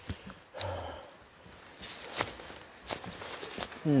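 Footsteps through ferns and dry leaf litter on a forest floor, with a few sharp crunches or twig snaps, the loudest about two seconds in. A brief low breathy sound comes about half a second in.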